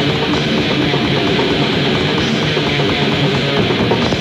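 Thrash metal band playing live: heavily distorted electric guitars and bass over fast, dense drumming, in an instrumental stretch between vocal lines.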